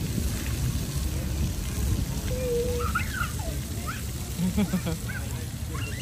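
Splash pad ambience: a steady low rumbling noise with water running, and a few short, distant children's voices and calls.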